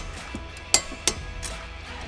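Background music with a few sharp metallic clinks of hand tools and suspension parts being handled. The loudest clinks come about three-quarters of a second in and just after a second.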